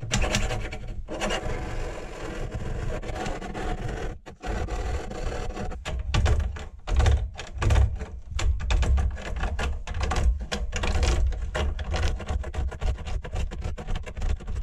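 Hand file rasping back and forth against the aluminium core of a BMX peg in repeated strokes. It is filing down the worn, inward-curled lip at the peg's end.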